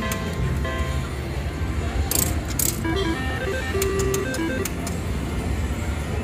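Slot machine sounds on a casino floor: a steady mix of short electronic chimes and jingle tones, with a few sharp clicks about two seconds in.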